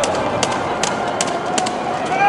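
Scattered handclaps from a roadside crowd cheering runners on, sharp single claps at an uneven pace of a few per second, with a faint voice calling out near the end.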